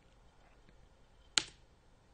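A single sharp computer mouse click about one and a half seconds in, over near silence.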